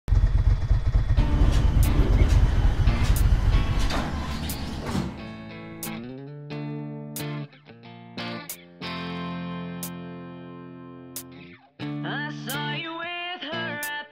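A Ducati motorcycle engine running loud and rumbling for the first four seconds or so, fading out as a rock song begins. The song opens with sustained guitar chords punctuated by sharp accents.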